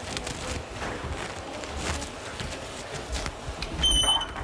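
Low room noise with faint scattered rustles and clicks, then a short high electronic beep near the end.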